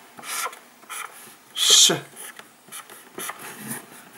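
Dry-erase marker drawn across a small whiteboard in a series of short strokes as capital letters are written, with one louder hissing stroke about halfway through.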